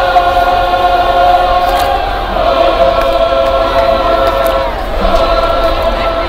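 Marching band members singing in unison in long held notes, the pitch changing about two seconds in and again near the end.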